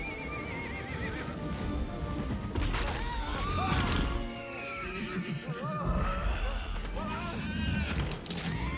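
A cartoon winged horse whinnying, in two bouts of wavering neighs about two and a half seconds in and again from about five seconds, over dramatic film-score music.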